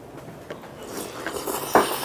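Close-miked eating sounds: chewing a mouthful of green onion kimchi, with a small click about half a second in and a noisier hiss building from about halfway through.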